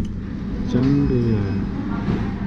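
Indoor café din with a steady low rumble and background murmur, and a voice speaking briefly about a second in.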